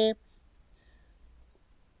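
Near silence: room tone, with one faint click about a second and a half in.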